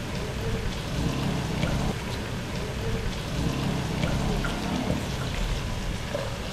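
Chopped onion and sliced bell peppers sizzling in hot oil in a frying pan, with small pops scattered throughout.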